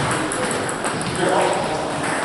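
Table tennis balls clicking sharply off bats and tables in a busy hall, several scattered ticks over background voices and a murmur in the room.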